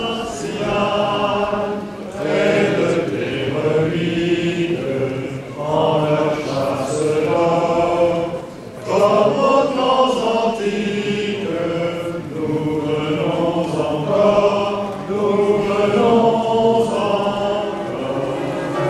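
A group of voices singing a religious chant in held, phrase-by-phrase lines, with brief pauses between phrases.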